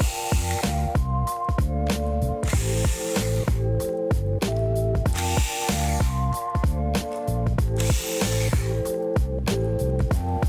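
Background music with a steady beat, over which a cordless electric screwdriver runs in about four short bursts, each about a second long, backing out small motherboard screws.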